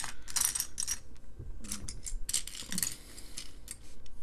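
Loose plastic LEGO bricks clattering and clicking against each other as a hand rummages through a pile of them, a quick irregular series of small clicks.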